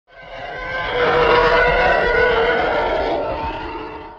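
A sustained intro sound effect made of several steady pitches together, swelling in over about a second and fading away near the end.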